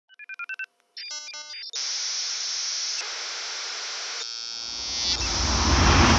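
Electronic intro sounds of an archive logo sequence: a quick run of short beeps and multi-tone blips, then a steady hiss of TV static, then a swelling, rising whoosh that builds toward the end.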